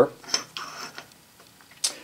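A few faint light ticks and taps of hands handling cast aluminium mold halves on a granite surface plate, with one sharper tick near the end.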